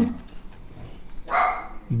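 A pause in a man's speech: low, steady room noise, with one short breathy noise about a second and a half in.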